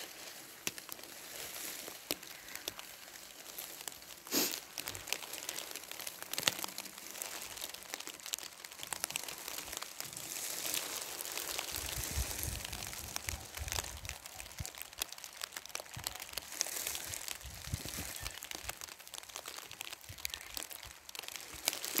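Rustling and crinkling close to the microphone, with many scattered clicks. One sharper click comes about four seconds in, and low rumbles come near the middle.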